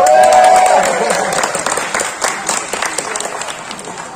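A loud shout from many voices rises in pitch and holds for about a second. It opens a dense burst of clapping that fades away over the next few seconds.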